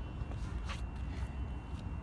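Low steady outdoor background rumble with a few faint scuffs, as of footsteps on asphalt.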